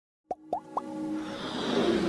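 Animated logo intro sting: three quick pops that glide up in pitch in the first second, then a rising whoosh that swells with music.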